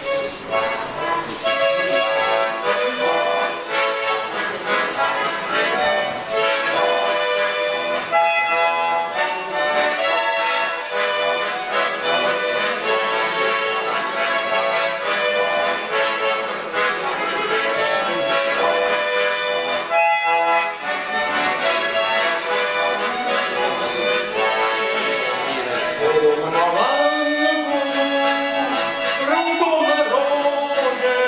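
A Petersburg accordion (a Lithuanian button accordion with button keyboards at both ends) playing a folk song tune throughout. Near the end a man's voice starts singing over it.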